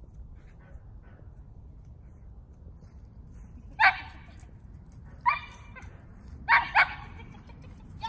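A dog barking four times in short, sharp barks: one about four seconds in, another a second and a half later, then two in quick succession near the end.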